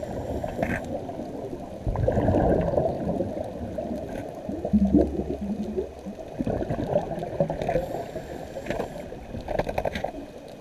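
Muffled underwater sound of a scuba diver breathing through a regulator, with bursts of exhaled bubbles, the loudest about five seconds in.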